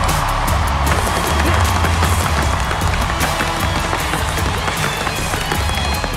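Tap shoes striking a wooden dance board in quick runs of sharp taps, over loud backing music with a steady bass.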